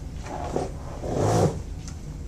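Sheets of paper music rustling as they are handled and shuffled, in two bursts, the second and louder one about a second in.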